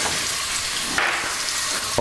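Pieces of raw pork loin sizzling in hot olive oil in a wok, a steady crackling sizzle that swells briefly about halfway through.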